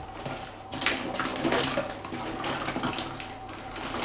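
Rustling and light clattering of small objects being handled close to the microphone, an irregular run of small knocks and scuffs.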